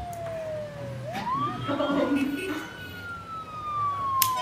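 An imitated police siren: one wailing tone that slides down, sweeps back up about a second in, holds high briefly, then sinks slowly again.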